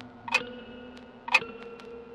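Clock ticking slowly, about one tick a second, twice here, each tick followed by a faint ringing tone that hangs on until the next.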